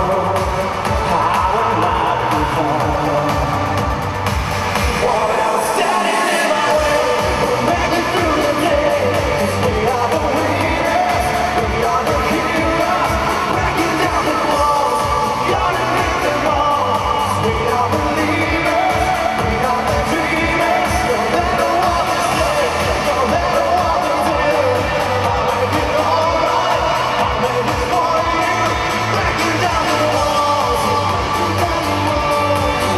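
Pop-rock song with a steady drum beat, electric guitars and a male lead vocal. The bass and kick drum drop out for about a second and a half around five seconds in, then the full band comes back.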